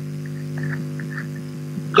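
Steady low electrical hum with several overtones, like mains hum, coming through video-call audio.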